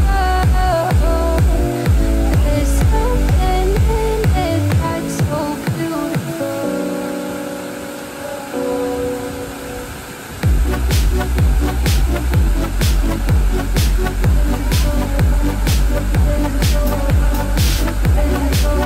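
Background music with a steady beat and deep bass. About six seconds in, the beat drops out, leaving held chords, and it comes back in about four seconds later.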